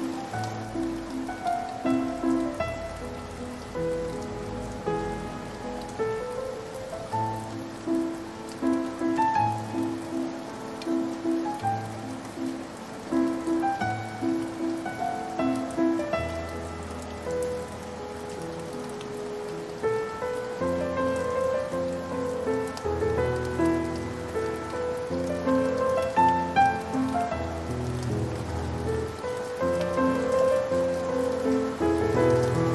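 Slow, sad piano music, a repeated chord figure under a gentle melody with low held bass notes, mixed over the steady patter of rain.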